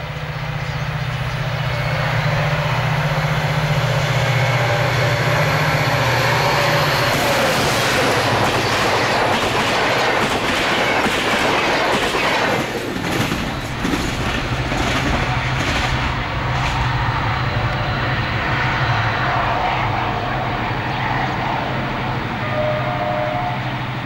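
DSB class Mz Nohab-built, GM-engined diesel-electric locomotive running at speed as it passes, its engine a steady low drone under the rumble of the train. Wheels clatter over rail joints through the middle stretch.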